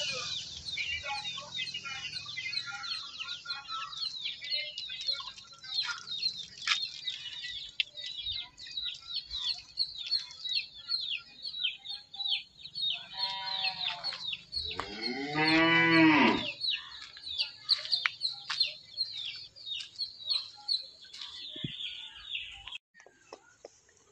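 Chicks peeping continuously, a rapid stream of high falling peeps. About two-thirds of the way through, a cow moos loudly once, with a shorter call just before it. The peeping stops abruptly shortly before the end.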